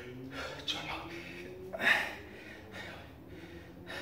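Hard, forceful breathing of a man mid-way through a long set of push-ups, with sharp exhales, the loudest about two seconds in.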